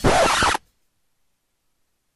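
A loud, scratchy noise burst of about half a second cuts off abruptly, followed by dead digital silence.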